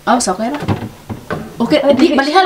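People talking, with a bump or two of a plastic bowl being set onto a refrigerator shelf.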